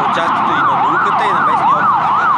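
Emergency vehicle siren sounding a fast up-and-down wail, rising and falling about two and a half times a second.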